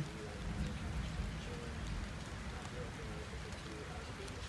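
Steady rain, an even hiss with no thunderclap, and faint voices in the background.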